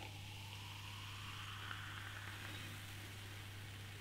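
Beer pouring gently from a bottle into a glass: a faint, steady fizzing hiss as the head forms.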